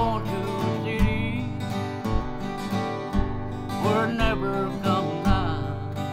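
Acoustic guitar strummed in a steady country-gospel rhythm, a low bass note falling about once a second, with a man's voice singing a few wavering, drawn-out notes between the strums.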